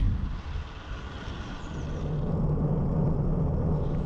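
Low rumbling road noise that builds from about a second in, with a steady low hum underneath in its second half.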